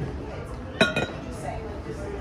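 Cut-crystal glassware clinking: a sharp glass clink with a brief bright ring a little under a second in, followed at once by a second, lighter clink.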